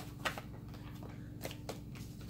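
A few soft, sharp clicks of tarot cards being handled as a card is pulled from the deck, over a faint steady hum.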